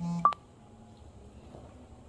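A short electronic beep right at the start, about a third of a second long, then quiet room tone.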